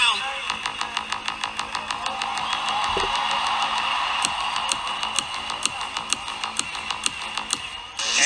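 Electronic dance music with a steady fast beat, played by a DJ in a live arena set, over a dense crowd noise.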